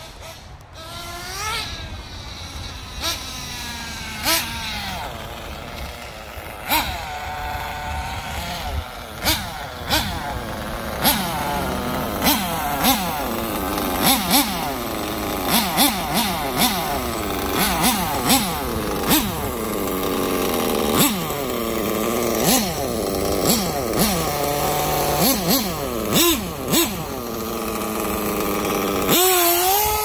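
Nitro RC buggy's small glow-fuel engine revving up and dropping off again and again as the car is driven, its pitch rising and falling with each burst of throttle. Near the end it runs loud and close with a steady high pitch.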